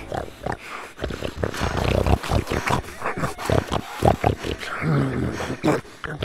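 A film monster's growls and snarls: a string of short, irregular guttural noises, with a brief pitched groan about five seconds in.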